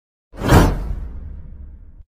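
Editing whoosh sound effect with a deep low rumble under it, coming in sharply about a third of a second in and fading out over the next second and a half.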